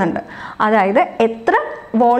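A woman's voice speaking: only speech, with no other sound.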